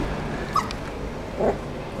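A puppy gives one short, high yip about half a second in while play-fighting with a kitten. A person laughs briefly near the end.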